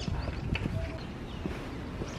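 Footsteps on a paved street: a few separate steps over a steady background of outdoor street noise.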